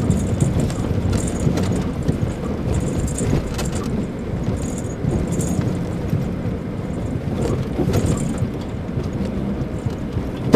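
Interior sound of a Mitsubishi Pajero Mini kei 4x4 driving slowly over a rutted, snow-covered dirt road: a steady low engine and tyre rumble, with a light high-pitched jangling rattle that comes and goes every second or so as the car bounces.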